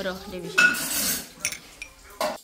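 Metal spoon stirring and scraping mashed apple in a small glass cup. About half a second in it knocks against the glass with a short ring, and a couple of light taps follow near the end.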